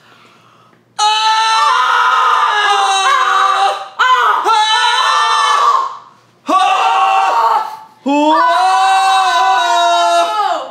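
A woman singing loud, shrill, wordless high notes in a mock-operatic style: four long held phrases with swoops in pitch and short breaks between them, starting about a second in.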